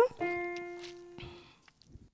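A single note struck on a digital piano, fading out over about a second. It gives the singer her starting pitch for trying the song a whole tone higher.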